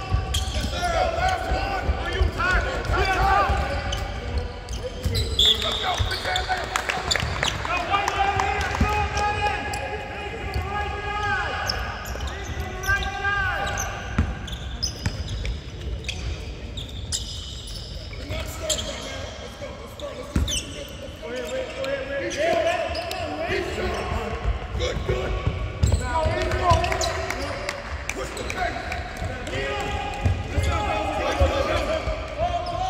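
Basketballs bouncing on a hardwood court, with players' shouts and calls in a large arena.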